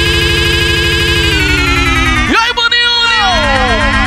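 Electronic dance music on a big sound system: a fast pulsing beat under wavering synth tones that slowly slide downward. About two and a half seconds in, a sharp rising sweep is followed by several falling glides, a siren-like synth effect.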